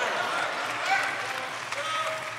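Congregation applauding, with a few faint voices calling out.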